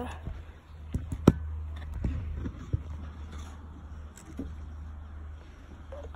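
Handling noise of a phone camera held up against a glass bowl: a steady low rumble with a few sharp clicks and taps, the loudest a little over a second in.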